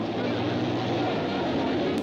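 JAP single-cylinder speedway motorcycle engines running flat out in a race, a steady, unbroken drone.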